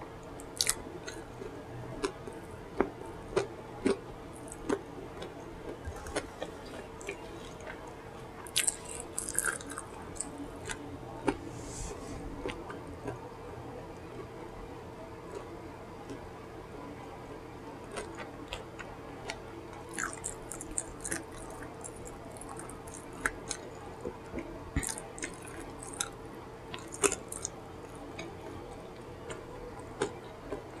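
Close-miked wet chewing and lip smacking on chicken dipped in creamy sauce, with irregular clicks and smacks throughout and a faint steady hum underneath.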